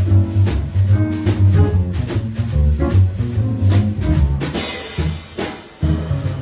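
Upright double bass and drum kit playing jazz together: a plucked bass line of changing low notes under cymbal and drum strokes, with a cymbal crash about four and a half seconds in.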